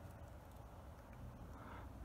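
Near silence: faint outdoor background with a steady low rumble and no distinct sound.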